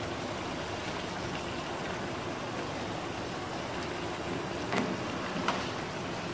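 Pan of chicken curry cooking on a gas stove: a steady hiss, with a couple of faint clicks near the end.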